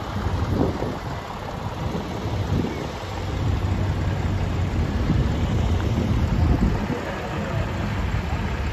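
Small vintage tractor and following cars driving past on a wet road: a steady low engine drone with tyre hiss.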